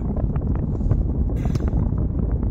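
Steady low rumble of road and wind noise inside a car's cabin.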